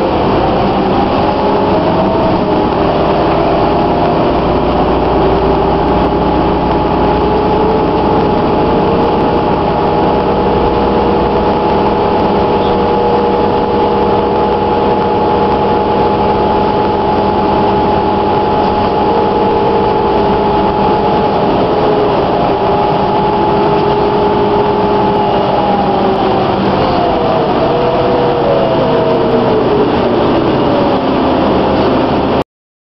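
Inside a 2009 New Flyer DE41LF hybrid bus with an Allison EP hybrid drive and a Cummins ISL diesel, under way. A whine of several tones rises in pitch over the first two seconds as the bus gathers speed and holds steady while it cruises. It falls near the end as the bus slows, over the steady running of the diesel engine.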